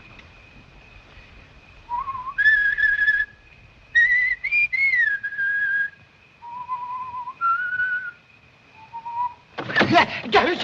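A person whistling a slow tune in held notes, in short phrases with pauses between them, beginning about two seconds in. A clatter of knocks starts right at the end.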